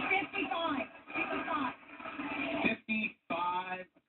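Game-show audio played from a television's speaker: indistinct voices over a fading music bed, breaking into short separate bursts of voice in the last second or so.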